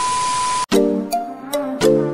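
Glitch-style TV-static transition sound effect: a burst of static hiss with a steady beep that cuts off abruptly about two-thirds of a second in. Background music with plucked notes follows.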